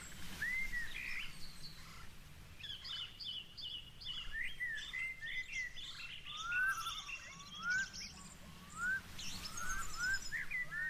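Several birds chirping and singing outdoors, one repeating a short rising note about once a second in the second half, over a low steady background rumble.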